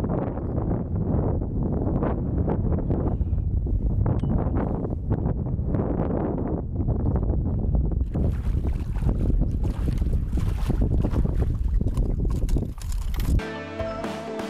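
Wind buffeting the microphone over water. From about eight seconds in, splashing as a hooked pike thrashes at the surface and is scooped into a landing net. Music takes over near the end.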